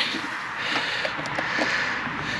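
Steady background hiss with a few faint light clicks as the jump starter's red cable clamp is handled at the car battery.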